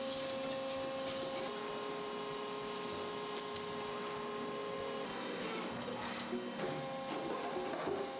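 Automatic wire coat-hanger forming machine running: a steady mechanical whir with a held hum, the tone shifting about five seconds in as some of the hum drops away.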